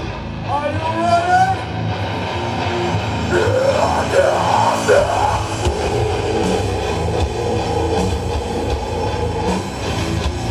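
Heavy metal band playing live through a loud PA: distorted electric guitars over drums. Several rising pitch slides sound in the first half, and the low bass fills out from about halfway through.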